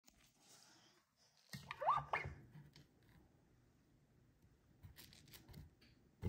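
Quiet handling of a plastic soap-pump sponge caddy: a scrape with a short rising squeak about two seconds in, then a few light clicks near the end.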